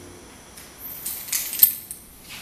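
Light metallic jingling and clinking of small metal objects, with one sharp clink about a second and a half in.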